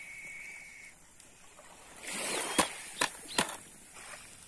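A tin-can bite indicator on a staked fishing line clinking three sharp times, about half a second apart, after a short rustle: the sign that fish have started taking the bait. A faint steady high tone sounds during the first second.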